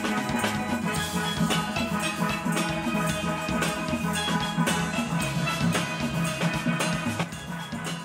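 Steel band music: steelpans playing a tune over a steady drum beat.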